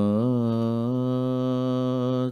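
A man chanting a Sanskrit devotional verse, holding one long note that rises slightly at first and then stays steady.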